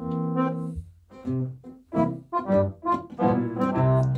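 A male voice vocalising a lăutar-style horă tune in C major without words. It holds one long note for about a second, then sings a run of short, separated notes.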